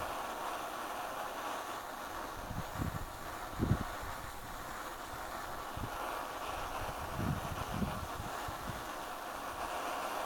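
Borde self-pressurised petrol stove burning steadily with an even rushing noise as it heats a mess tin of water that is not yet at the boil. A few low buffets of wind on the microphone come about three seconds in and again about seven to eight seconds in.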